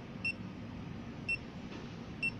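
Two short, high electronic key beeps from a Nikon total station, about a second apart, as its buttons are pressed to page through stored survey records.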